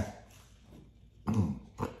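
About a second of near quiet, then a man's short breathy chuckle in two brief bursts near the end.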